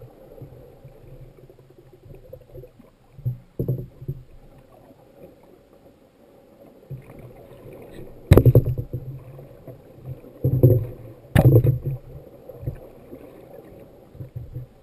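Water sloshing and surging as heard underwater, broken by several heavy knocks, the two loudest about eight and eleven seconds in.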